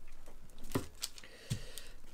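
Burger press pushed down on a beef patty between sheets of wax paper: faint paper rustling with a couple of soft knocks, one a low thud about one and a half seconds in.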